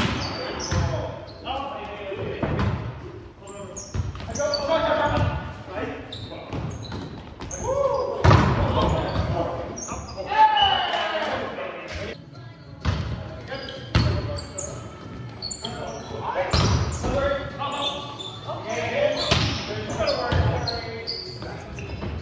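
Indoor volleyball rally: repeated sharp slaps of the ball being hit and striking the floor, mixed with players' shouted calls, echoing in a large gym.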